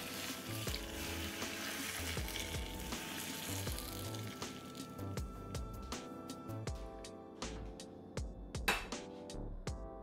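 Hot vegetable oil sizzling as it is poured over raw garlic, green onion and chili on a bowl of noodles, frying the toppings. The sizzle is strongest for the first few seconds and dies away after about five seconds. Background music plays throughout.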